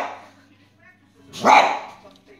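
A small Xoloitzcuintli (Mexican hairless dog) barking at a paper turkey picture held up in front of it: one bark trailing off at the very start and another about a second and a half in.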